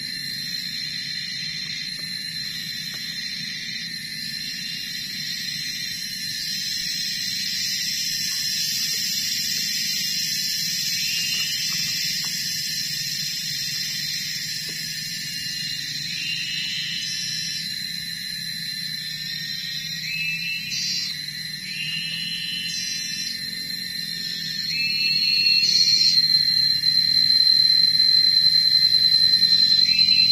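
A steady, high-pitched insect chorus of cicada-like droning, with short chirping calls repeating from about halfway through. It grows louder a few seconds before the end.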